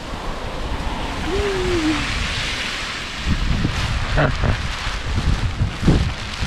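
Heavy rain with wind buffeting the camera microphone, a steady hiss over a low rumble. A brief voice-like sound comes about a second and a half in, and a few low thumps follow near the end.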